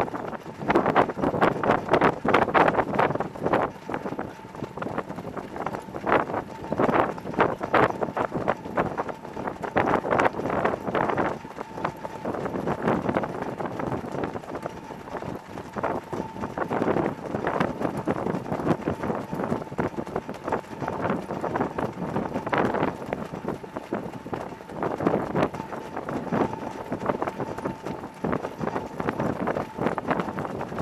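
Hoofbeats of several harness horses trotting on a dirt track, a dense, irregular clatter, with wind buffeting the microphone as the camera moves along with them.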